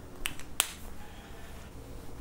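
Three short sharp clicks within the first second, the last one the loudest, over faint room tone.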